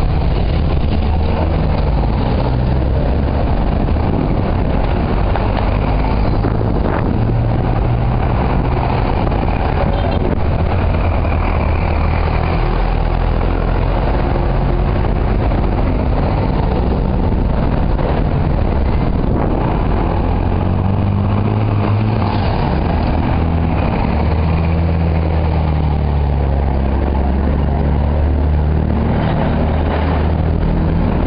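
Loud, steady rumble of wind buffeting a bicycle-mounted camera's microphone while riding, mixed with bicycle tyres rolling on asphalt.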